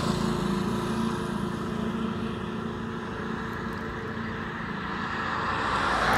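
Road traffic passing close by, a steady rushing noise that fades after the start and then swells to its loudest at the end as another vehicle approaches.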